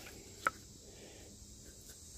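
Wooden boards being handled: one short, sharp click about half a second in, otherwise quiet.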